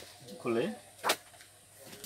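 A short spoken word, then one sharp knock about a second in, from an item or a hand meeting the laminate shop counter.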